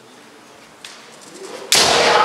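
Kendo fencers' kiai shout bursting out near the end, starting with a sharp impact as they strike and carrying on as a loud held cry; before it, low hall noise and a light tap about a second in.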